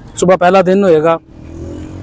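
A man talks for about the first second. Then a passing motorcycle's engine is heard rising in pitch as it speeds up.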